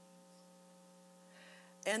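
Faint steady electrical hum on the recording, a low drone with several fainter steady tones above it, during a pause in a woman's talk; she starts speaking again near the end.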